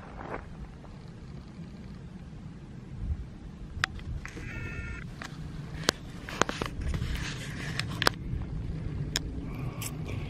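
A hiker's footsteps crunching and snapping on a dry, brushy dirt trail, a scatter of sharp clicks over a low wind rumble on the microphone. A short high call sounds about four and a half seconds in.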